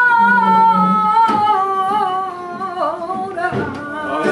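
A woman singing flamenco cante. She holds one long note with vibrato, then slides down in an ornamented, wavering run over the last two seconds, with flamenco guitar accompanying her.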